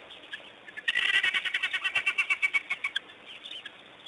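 Animal calls: a rapid chattering run of short, high chirps, about ten a second, lasting about two seconds, followed by a few scattered faint chirps.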